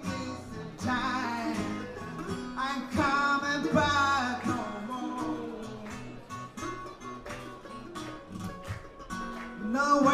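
Acoustic guitar and mandolin playing a blues together live, with sharp plucked notes over strummed chords.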